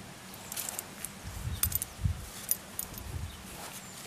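Faint scattered clicks and rustles from someone moving about and handling tools, over a low, steady outdoor rumble.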